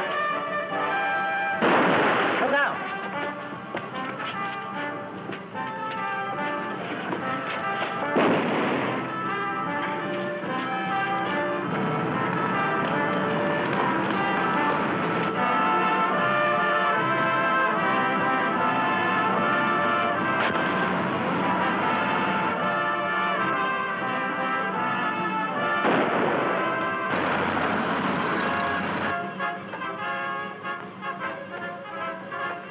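Dramatic orchestral film score with brass, playing throughout and cut by loud noisy bursts about two seconds in and about eight seconds in, with a longer noisy burst near the end.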